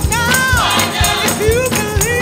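Gospel choir singing an upbeat song with the band, the voices gliding and wavering on held notes, over a steady beat of hand clapping.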